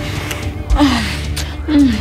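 Background music with a slow low bass beat, over a woman's breathy gasps during a kiss. There are two gasps, about a second in and near the end, each falling in pitch.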